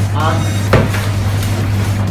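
A single sharp knock about three-quarters of a second in, over a steady low hum.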